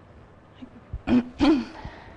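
A person clearing their throat twice in quick succession, about a second in.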